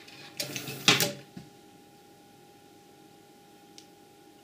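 Small 12 V geared motor whirring for under a second as it swings its arm round, ending in a sharp click as the telephone hook switch and relay cut it off at the preset position. After that only a faint steady tone and a couple of light ticks.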